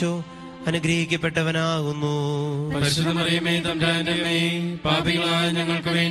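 A voice chanting a Malayalam prayer in a steady recitation, over a sustained musical drone, with brief pauses between phrases.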